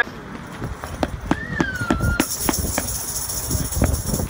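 A handheld microphone being handled, giving a run of knocks, clicks and rubbing. About a second in, a short whistle-like tone slides down, and a steady high hiss starts about halfway through.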